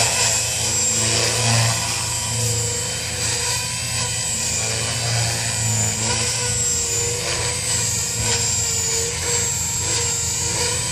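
JR Forza 450 radio-controlled helicopter flying: a steady high-pitched whine over a lower rotor drone, the pitch wavering a little and the level swelling slightly as it manoeuvres.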